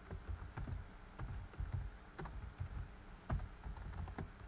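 Typing on a computer keyboard: a word typed out as irregular key clicks.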